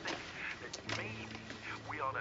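Office background ambience: faint murmured voices, joined about a second in by a steady low hum.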